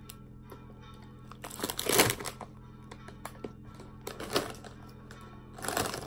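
Crinkly plastic snack bags rustling and crackling as they are handled, loudest about two seconds in, over quiet steady background music.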